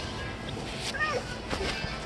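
A domestic cat gives one short meow about a second in, over background music.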